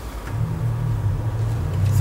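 A low, steady rumble that starts a moment in and grows slightly louder, with no speech over it.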